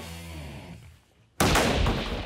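Cricket bat struck flat into the bottom of a tall stack of empty cardboard pizza boxes: one sudden loud whack about a second and a half in, knocking boxes out of the stack, trailing off over about half a second.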